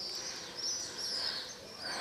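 Small birds chirping repeatedly over a faint, steady background of town noise.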